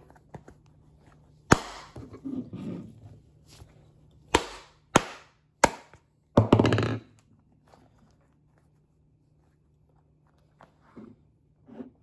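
Wooden glove mallet striking the wet leather pocket of a Rawlings Pro Preferred baseball glove, pounding the pocket into shape after a hot-water treatment. About five sharp smacks come at uneven intervals over the first seven seconds, the last one longer, followed by only faint handling.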